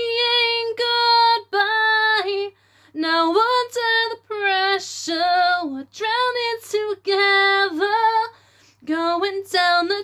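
A woman singing solo and unaccompanied: held, gliding sung notes in phrases, with two short breaks for breath.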